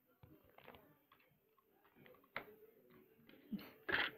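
Faint clicks and taps of plastic Lego bricks being handled as a brick is pulled off the model, with a few sharper clicks near the end.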